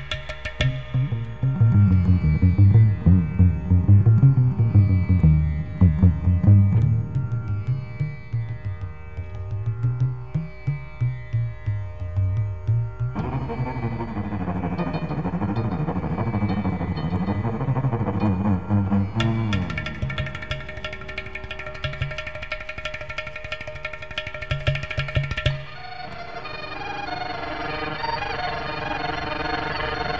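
Carnatic concert music in raga Abheri: a 10-string double violin with tabla and ghatam accompaniment over steady held tones. Quick percussion strokes run throughout and grow very dense and fast in the second half, then ease off near the end.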